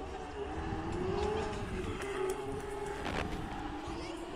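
Distant rally car engine on a gravel stage, its note rising and then held as the car drives on, with a short crackle about three seconds in.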